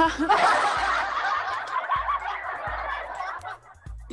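A sudden burst of group laughter, many voices at once, starting abruptly and fading out after about three and a half seconds.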